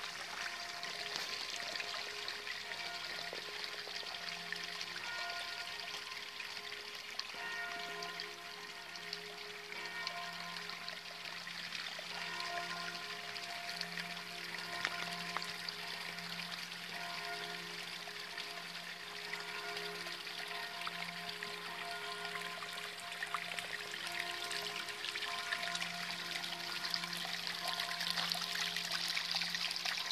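Running water trickling into a garden pond, growing louder near the end, under slow music of long held notes.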